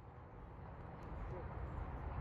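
Faint, distant voices of players and spectators calling across an outdoor soccer field, over a steady low rumble, growing louder toward the end.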